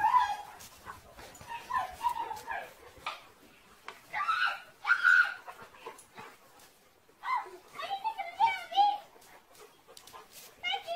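Dogs vocalising as they play-wrestle: clusters of short, pitched yips and whines that bend up and down, with brief quieter gaps between them.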